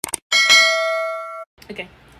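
Subscribe-button animation sound effect: quick mouse-like clicks, then a single bright bell ding that rings for about a second and stops abruptly.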